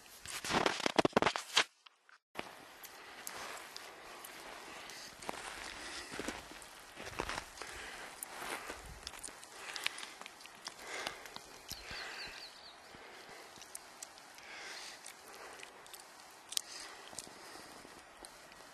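Footsteps of a person hiking uphill over dry, rocky ground and scattered sticks, with the rustle of clothing and gear: irregular light ticks and scuffs throughout. A louder burst of knocks comes in the first second or so, then a brief drop to silence about two seconds in.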